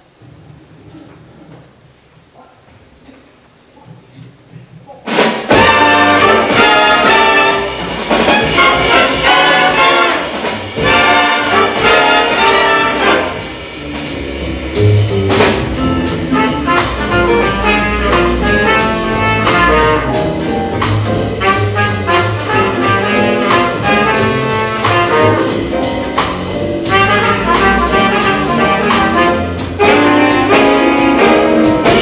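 Jazz big band of saxophones, trumpets, trombones, drums, upright bass and piano, coming in all at once about five seconds in after a few seconds of faint room noise, then playing loudly as a full ensemble.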